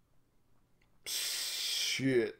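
A sharp, loud intake of breath, a gasp, starting suddenly about a second in and running into the start of a voiced exclamation near the end.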